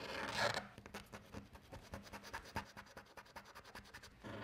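Felt-tip marker scratching on paper as it colours in letters through a cardboard stencil, in quick back-and-forth strokes, loudest in the first half-second.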